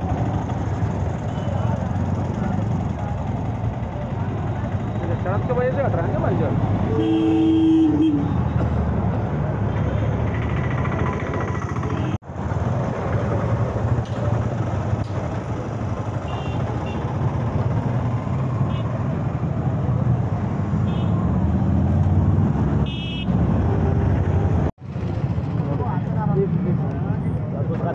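JCB backhoe loader's diesel engine running amid crowd chatter. A vehicle horn sounds once, for about a second, about seven seconds in.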